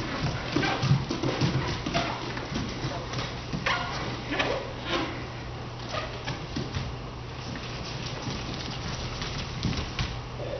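Bare feet running, stepping and landing on a studio dance floor: an irregular run of short thumps and slaps, thickest in the first half and sparser near the end, over a steady low hum.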